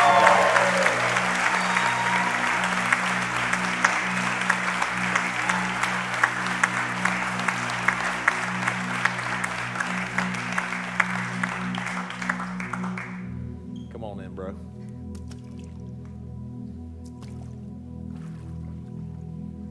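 A congregation applauds, with dense clapping that fades and then stops about thirteen seconds in. Soft sustained music chords run underneath and carry on alone after the clapping ends.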